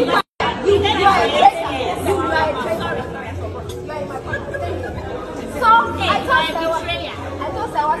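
Several people talking over one another, with a low pulse of background music underneath. The sound drops out for a moment just after the start.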